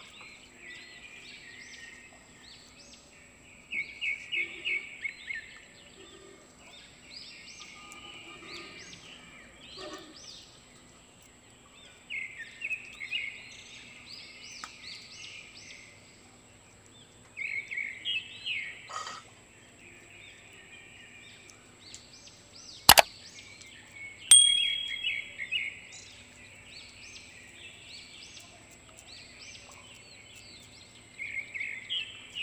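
Birds chirping and chattering in repeated bursts of quick notes, with one sharp click a little more than two-thirds of the way through.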